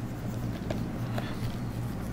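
A steady low hum with a few faint, brief ticks of a stylus on a drawing tablet as a sketch line is drawn.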